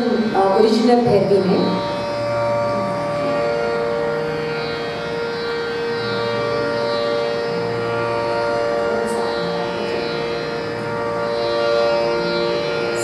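Harmonium holding long, steady notes that change only slowly. It sounds like a quiet drone and interlude between pieces of a Hindustani classical vocal recital.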